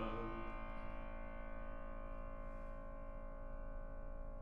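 Steinway grand piano's chord left ringing, many steady tones slowly fading together.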